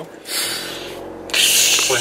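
Scratchy rubbing noise from a handheld phone's microphone being handled and moved. A first stretch is followed, after a brief pause, by a louder burst near the end.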